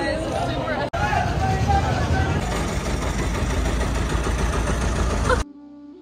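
A boat engine running with a steady low rumble under people talking at a jetty. About five and a half seconds in, this cuts off suddenly to soft flute music.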